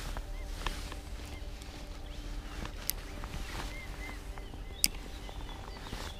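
Wind rumbling on the microphone at the riverbank, with a few faint short bird chirps and two sharp clicks about three and five seconds in.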